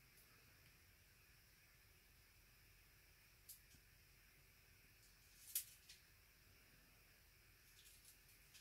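Near silence: room tone, with a faint click about three and a half seconds in and a brief soft rustle about two seconds later.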